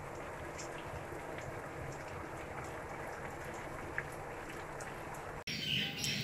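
Cream cooking down into ghee in a steel kadhai: a steady sizzle with small crackles as the butterfat froths near the end of cooking. It cuts off abruptly about five and a half seconds in.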